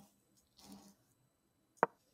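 A single short, sharp click near the end, the sound of a chess piece being moved in an online chess game, here white's queen. A couple of soft, faint rustles come before it.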